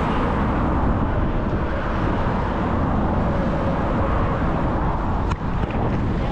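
Steady road traffic and wind rushing over the microphone of a moving bicycle, with cars passing in the adjacent lanes. A single short knock comes near the end.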